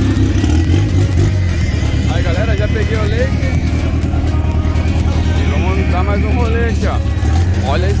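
A car engine idling close by, a steady deep rumble, with people talking in the background.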